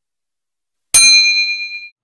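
Notification-bell 'ding' sound effect from a subscribe-button animation: a single bright bell strike about a second in, ringing out with a few clear high tones that fade within a second.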